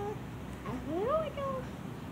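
A toddler's wordless sung vocal sound: one note sliding steeply up, then settling a little lower before it stops.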